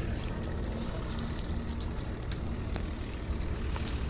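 Steady low rumble of wind buffeting the microphone outdoors, with a few faint clicks.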